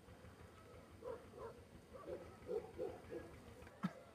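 A string of about six faint, short animal calls, with a sharp click near the end.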